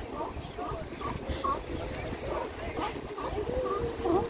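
California sea lions calling in short, repeated barks, with one longer held call near the end, over the low wash of surf on the rocks.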